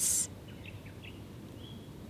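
A spoken word ends in a brief breathy hiss at the start, then a pause filled with faint, short bird chirps over quiet outdoor background noise.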